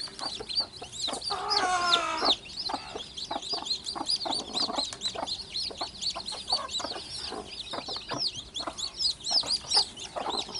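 A brood of newly hatched chicks peeping without pause in rapid, high cheeps, while the mother hen clucks low among them. Between one and two seconds in, a longer pitched call lasting about a second stands out over the peeping.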